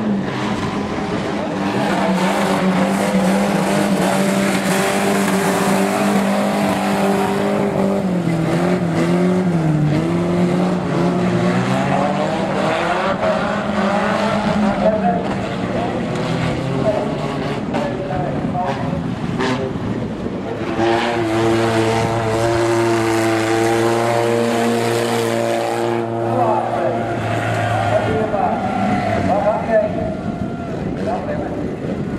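Banger-racing cars' engines revving and running under load as the cars push against each other in a pile-up, each engine note held steady for several seconds, with a couple of sharp crunching impacts of metal bodywork.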